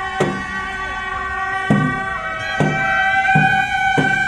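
Procession band music: horns hold long, reedy notes that shift in pitch a few times. Hand cymbals and a gong crash four times, irregularly, about once a second.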